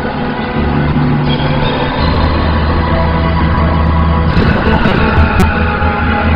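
Dramatic background score: sustained low bass notes under a steady wash of instruments, the chords shifting about half a second and two seconds in.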